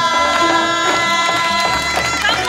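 Korean traditional folk music: a loud, reedy wind melody of held and bending notes over drum strokes.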